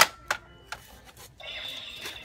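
Plastic clicks and snaps of a toy Minecraft sword being folded into an axe shape: one sharp, loud click at the start, a second about a third of a second later, then a few fainter clicks.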